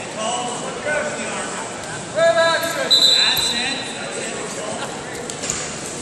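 Voices shouting short calls during a freestyle wrestling bout, a few times, with thuds of the wrestlers' feet on the mat and a brief high squeak about three seconds in.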